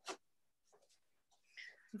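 Near silence between speakers, broken by a short faint click-like noise right at the start and faint voice sounds in the last half-second.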